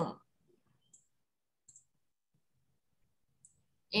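Computer mouse clicking a few times, faint and short, while a slide's text box is edited; otherwise near silence.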